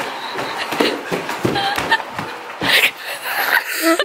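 People laughing in irregular, breathy bursts of giggles and snickers.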